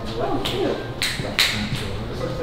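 Footsteps on a hardwood floor: four sharp taps, about half a second apart.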